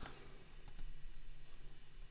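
A few faint computer mouse clicks over quiet room tone with a low steady hum.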